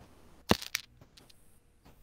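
A sharp click about half a second in, followed by a few fainter clicks, as of something being handled.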